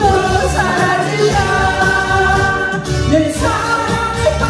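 A woman singing a Korean song into a microphone over amplified accompaniment with a steady beat, holding long notes across the lines.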